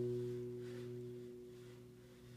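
The last chord of a minstrel gourd banjo ringing out and fading away. The upper notes die first while the low notes linger.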